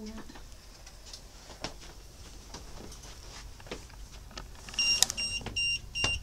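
Quiet room with a few faint clicks, then about a second before the end an EMF meter's alarm starts beeping: short, high-pitched electronic beeps repeating about three times a second. The beeping signals that the meter has picked up an electromagnetic field reading.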